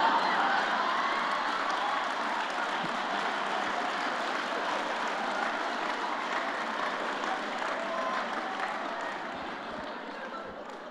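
A large audience applauding, with crowd noise, the sound slowly fading toward the end.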